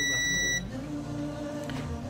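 A steady, high-pitched electronic beep that cuts off abruptly about half a second in, over background music with sustained low notes.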